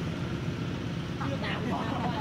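Steady low drone of a running engine, with brief faint voices about a second and a half in.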